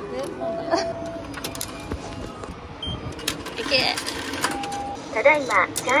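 Short electronic beeps and clicks from a Japanese station ticket gate and fare adjustment machine, with the machine's recorded voice starting near the end.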